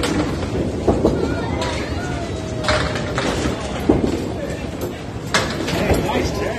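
Candlepin bowling alley: balls striking pins and lanes, with sharp clattering knocks at irregular intervals, about one a second, over a steady bed of background voices.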